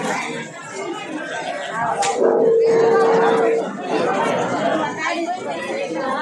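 Many people talking at once in a large hall. About two seconds in there is a sharp click, then a steady single-pitched tone that lasts about a second and a half and stands out as the loudest sound.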